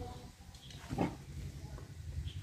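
Quiet outdoor background with a faint low rumble, and one brief animal call about a second in.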